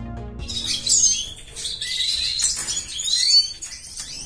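Intro music fades out in the first half second. Then small aviary songbirds, canaries and finches, chirp continuously with quick high notes and short gliding calls.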